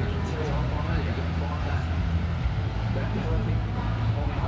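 A wave breaking in a wave pool, heard as an even wash over a steady low rumble, with indistinct voices underneath.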